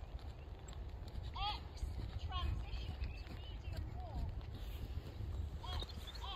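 Shire horse's hoofbeats during a walk-trot dressage test, over a steady low rumble, with short high chirps a few times.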